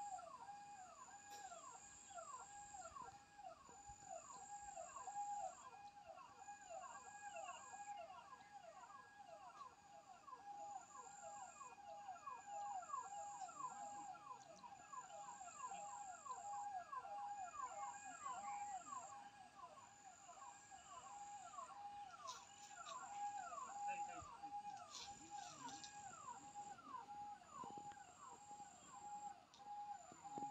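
Faint animal-like calls, one short pitched note repeated very regularly at about two to three a second, over a high thin buzz that pulses about once a second.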